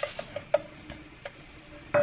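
Light, scattered ticks and taps as the last dry red lentils fall from a cup into a slow cooker's pot and the cup is knocked against it and pulled away, with a sharper knock near the end.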